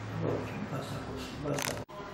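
Faint, indistinct voices of people talking in a room over a steady low electrical hum. A short hiss comes about one and a half seconds in, and the sound cuts out for an instant just before the end, as at a cut in the camcorder recording.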